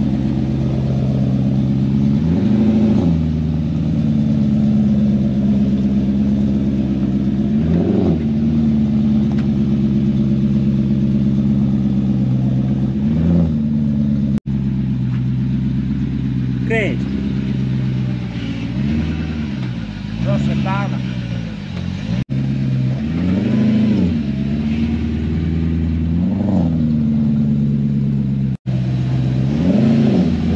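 Six-cylinder engine of a BMW E30 race car running cold through its twin-pipe exhaust. It is given about eight short revs that rise and fall back to a steady idle.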